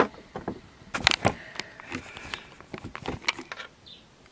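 Handling noise as a camera is set down and repositioned: a few sharp knocks and clicks about a second in and again past three seconds, with faint rubbing and rustling between.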